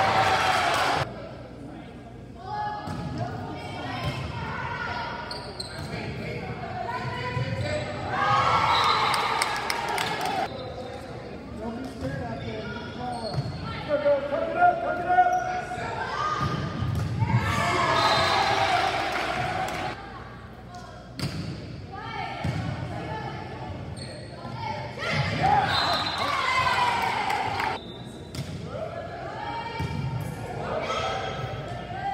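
Volleyball rallies in a reverberant gym: the ball being hit and bouncing on the hardwood court, with bursts of players' and spectators' shouting and cheering as points are won, several times.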